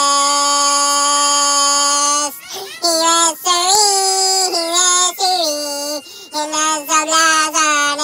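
A children's song sung in a high, child-like voice. The voice holds one long note for about two seconds, then sings a string of short syllables that slide up and down in pitch.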